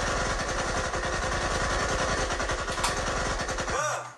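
Engine running with a rapid, steady low rumble, played back through speakers, cutting off suddenly just before the end.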